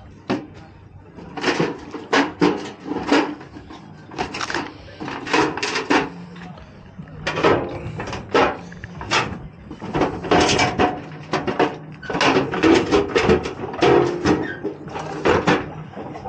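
Rusty steel cantilever toolbox being opened and handled, its metal trays and lid clanking in a run of short, irregular knocks, with voices in the background.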